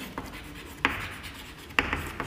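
Chalk writing on a chalkboard: faint scratching strokes, with two short sharp ticks, one just under a second in and one near the end.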